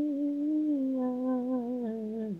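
A single unaccompanied voice holding one long sung note. The note brightens about a second in and eases down slightly in pitch near the end.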